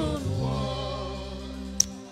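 Gospel worship music fading out: sustained chords with voices faintly holding a note, dying away, and one brief sharp click near the end.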